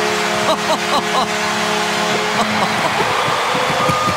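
Arena goal horn blaring over a cheering crowd, the home-team signal for a Coyotes goal. The horn's steady chord cuts off about two seconds in, and the crowd keeps cheering.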